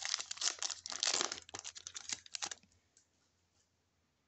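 A stack of trading cards being thumbed through by hand: quick, dense rustling and flicking as the cards slide against one another, stopping about two and a half seconds in.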